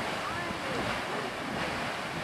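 Grand Geyser erupting: a steady rushing of water and steam.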